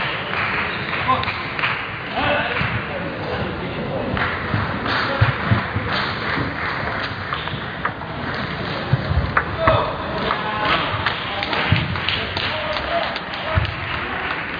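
Table tennis ball clicking off bats and table during play, with scattered low thumps, over a steady background of crowd and player chatter in a busy hall.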